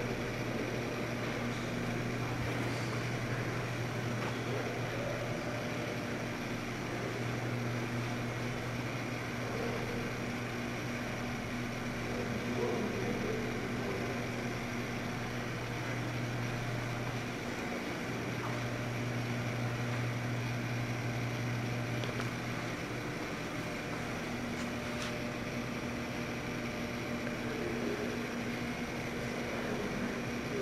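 Steady indoor room tone: a constant low hum under an even hiss, with no distinct events.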